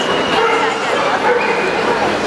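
Dogs barking and yelping over a steady background of crowd chatter, a continuous busy din without a pause.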